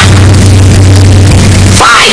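Deliberately overdriven, clipped audio: a steady low drone buried in harsh, static-like noise at maximum loudness.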